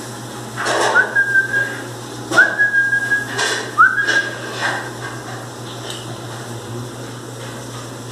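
A rubber squeaky toy squeaking three times as a miniature pinscher puppy bites it. Each squeak rises quickly to a steady, high, whistle-like tone held for about half a second to a second, with rustling and scuffling in between.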